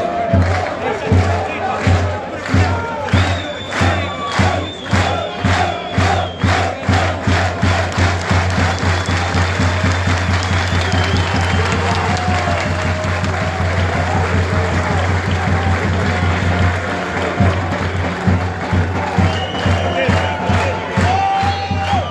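Football supporters chanting and shouting together over a regular, rhythmic drum beat, which weakens near the end.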